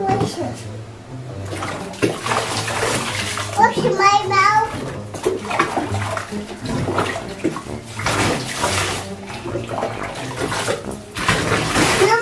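Water running from a tap into a bathtub, a continuous rush, with a toddler's short babble about four seconds in.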